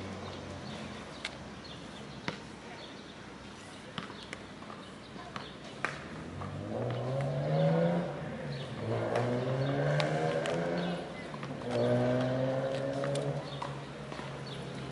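A motor vehicle's engine, heard in three long pitched pushes in the second half, its pitch shifting within each like an engine pulling through the gears. Before it come a few sharp clicks.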